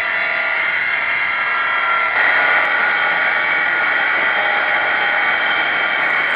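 Four-and-a-half-inch Milwaukee angle grinder running with its disc held against steel for a spark test: a steady whine over a grinding hiss. The tone shifts slightly about two seconds in.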